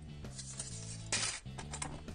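Background music with a steady, stepping bass line, with a few brief rustles of paper and packaging being handled.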